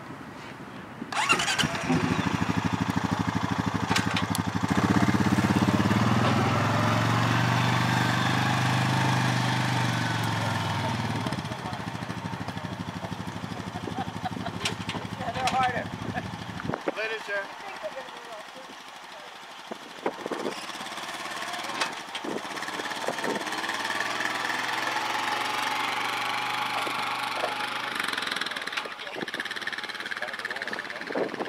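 A small vehicle engine running close by, starting about a second in, its sound swelling and easing, then stopping abruptly at about seventeen seconds. A fainter engine runs again in the second half.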